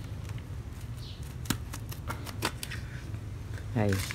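Scattered sharp plastic clicks and snaps, about a dozen, as the clip-together plastic rear housing of a TOTAL TG10710026 angle grinder is pried apart by hand.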